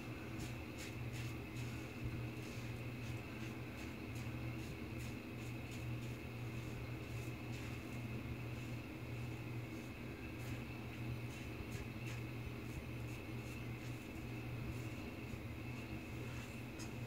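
Fine Accoutrements World's Finest Razor, a double-edge safety razor, scraping through lathered stubble on the neck in short strokes: a series of light scratches, thickest in the first few seconds and again near the end, over a steady low hum.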